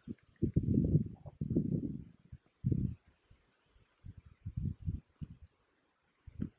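Wind buffeting the camera microphone: irregular low rumbles that come and go in gusts, dropping out briefly about halfway through.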